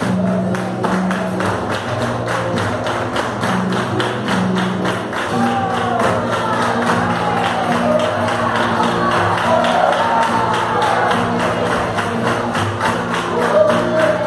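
Live flamenco music from a large ensemble: rhythmic hand-clapping (palmas) at about four claps a second over sustained instrumental accompaniment, with voices singing in rising and falling lines through the middle.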